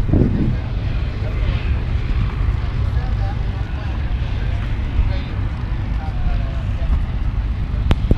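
Steady low rumble of wind buffeting the microphone, with faint voices of people talking in the background and a voice trailing off at the very start.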